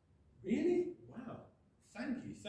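Speech only: a man says a few untranscribed words, starting about half a second in, with a short pause before more speech near the end.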